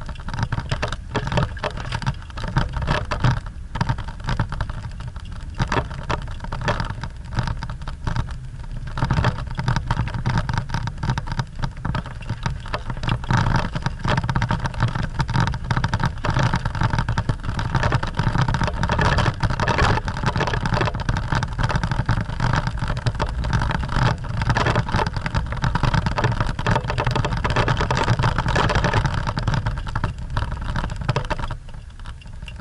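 A 4x4's engine running under load while driving over a rough dirt track, heard from inside the cab, with frequent irregular knocks and rattles from the bumpy ground. It gets louder from about nine seconds in.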